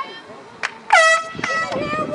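Two short blasts of an air horn, the first the loudest, the signal for a substitution in a college soccer match.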